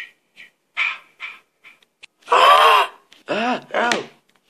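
A person's voice making non-word sounds: a quick run of short breathy syllables, then one long loud cry and a few shorter cries that rise and fall in pitch.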